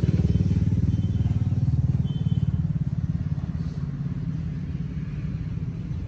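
A small engine running close by with a rapid low putter, loudest in the first few seconds and easing off as it moves away.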